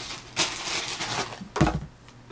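Bedding rustling as a toddler slides across a bed, then a thump about one and a half seconds in as she lands sitting on the mattress.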